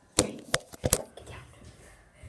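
A quick run of sharp knocks and bumps in the first second, then quieter rustling: handling noise from a phone camera being gripped and moved against the microphone.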